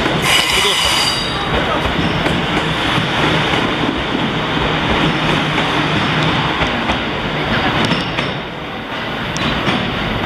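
E26-series Cassiopeia sleeper cars rolling past at low speed, wheels clattering over the rail joints, with a high wheel squeal in the first second or so. The noise eases off about eight seconds in as the last car goes by.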